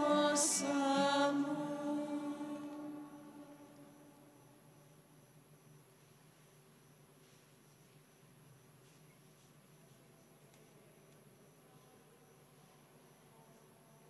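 A voice singing a liturgical chant, the phrase ending about two seconds in and dying away in the church's echo. Then faint room tone with a few soft clicks.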